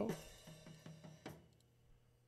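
A drum kit recording playing back faintly: a few scattered drum and cymbal hits, getting quieter as the overhead track's fader is brought down to zero.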